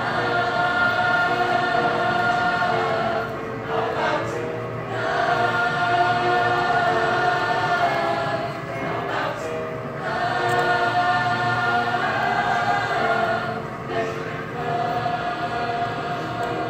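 A mixed show choir of girls' and boys' voices singing in harmony, holding long chords in phrases about five seconds long with brief breaks between them.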